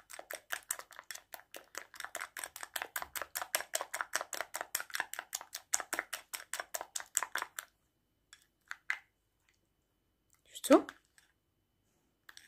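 Plastic spoon stirring a thick paste in a glass bowl: quick, even scraping strokes, about six a second, that stop about two-thirds of the way through. Near the end comes a single short, loud sound that rises in pitch.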